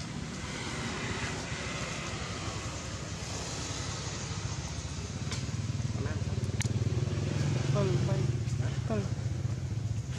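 Steady low hum of a motor vehicle engine running, growing louder in the second half. Near the end come a few short calls that fall in pitch.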